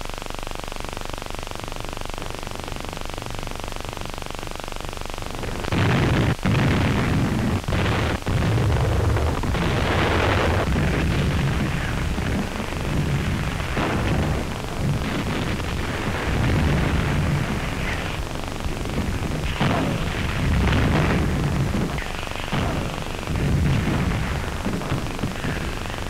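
Old film soundtrack hiss, then from about six seconds in a battle soundtrack of explosions and gunfire: repeated loud blasts and bursts of shots, with sharp cracks near the start, rising and falling in loudness.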